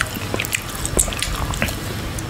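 Close-miked chewing of teriyaki turkey jerky: a scatter of small, sharp wet mouth clicks and smacks over a low steady rumble.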